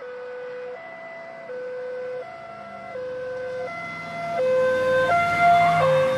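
Two-tone hi-lo emergency siren, alternating between a low and a high note about every three quarters of a second, growing louder toward the end.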